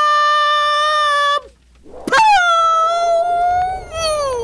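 Two long, high howling cries: the first is held steady and breaks off about a second and a half in, and after a short silence the second slides up, holds, and sags down near the end.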